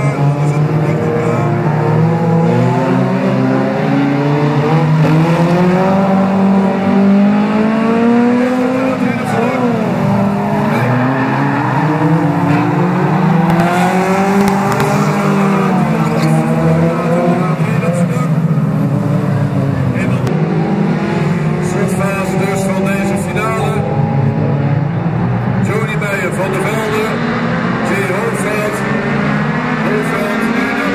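Several 1600 cc autocross cars racing on a dirt track, their engines revving, with the pitch rising and falling over and over as they accelerate and lift through the corners.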